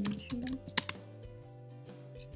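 Computer keyboard typing: a quick run of keystrokes that stops about a second in, over quiet background music.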